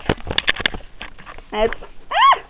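A quick run of sharp clicks and knocks from the camera being handled and moved, packed into the first second, followed by a short 'ah' from the girl.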